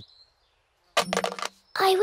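Cartoon sound effect of a coin dropped into a wishing well: a short run of quick clinks about a second in.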